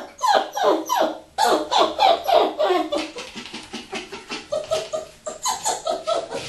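Parson Russell terrier puppy yapping in a rapid run of short, high yelps that fall in pitch, about three or four a second. After about three seconds the yelps turn shorter and quieter.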